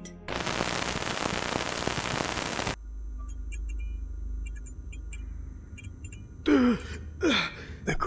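Sound-design transition: a loud burst of hiss that cuts off suddenly after about two and a half seconds, giving way to a low rumbling drone with faint high ticks. Near the end a man gives two sharp gasping breaths.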